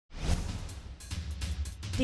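News-bulletin intro sting: a whoosh sound effect over the first second, then a shorter whoosh about a second in, over a music bed with a deep pulsing bass.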